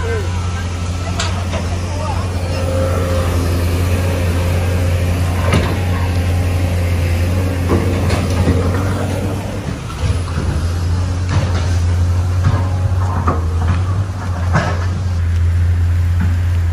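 A steady low hum, with voices and a few short knocks over it.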